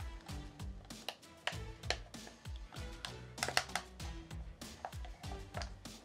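Quiet background music with a beat, under light clicks and taps of a rubber battery cover being pressed and squeezed onto a radio controller's hand grip.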